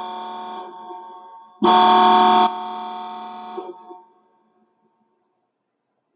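Electronic horn sound, turned up to full volume: a steady chord of several tones. One blast is already fading out, then a second loud blast comes about a second and a half in, lasts about a second, and dies away over the next two seconds. Each blast is loudest at its start.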